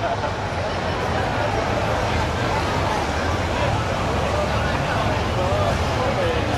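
Police motorcycle engines running as the bikes ride slowly past, with a low rumble that swells in the middle, under crowd chatter.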